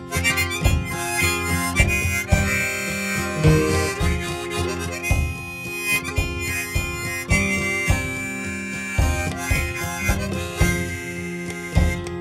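Instrumental break in a folk ballad with no singing: acoustic guitar plucking steadily under a held, sustained melody line.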